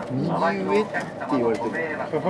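Speech only: people talking in low voices.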